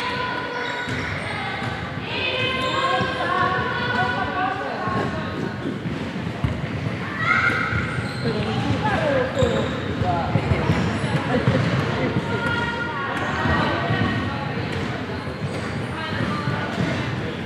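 A basketball bouncing on a wooden sports-hall floor, irregular knocks echoing in the large hall, over the chatter and calls of players' voices.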